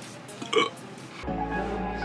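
A short burp from a man, then electronic music with a deep bass beat starts a little over a second in.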